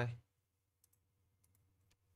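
A few faint, short clicks from working a computer as a command is selected, copied and pasted into a terminal.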